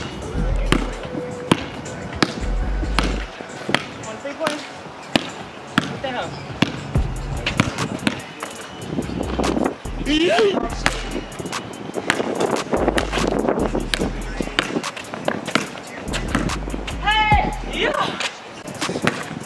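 A basketball dribbled on a hard court, a run of sharp bounces, over background music with a heavy bass beat.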